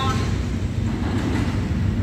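Steady low rumble of engines and traffic noise at a railway level crossing, heard in a gap between repeats of the crossing's looped loudspeaker warning.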